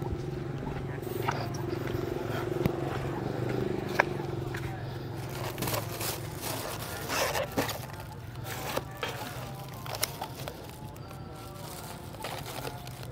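Plastic bags rustling and takeaway food containers clicking as they are unwrapped and opened, in scattered short bursts with a few sharp clicks, over a steady low hum.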